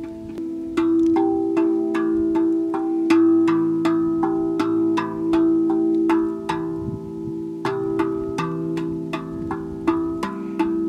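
Handpan being played by hand: a melody of struck metallic notes with a long ringing sustain, about two strikes a second over a lower ringing note.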